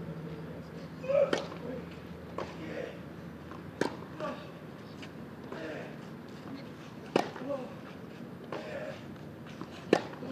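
Tennis ball struck back and forth by rackets in a baseline rally on a clay court: four sharp hits, roughly two and a half to three seconds apart. Short player grunts come with the shots, and footsteps scuff on the clay.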